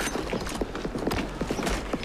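Dense, irregular clattering and knocking over a low steady hum.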